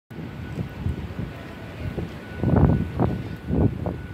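Wind buffeting the microphone: an irregular low rumble that grows into stronger gusts in the second half.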